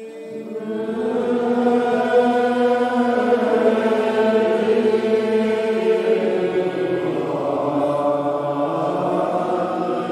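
A congregation singing a Gaelic metrical psalm unaccompanied, in slow, drawn-out notes from many voices, swelling in volume over the first second or two.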